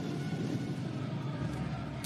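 Steady crowd din in a volleyball arena, with no single sound standing out.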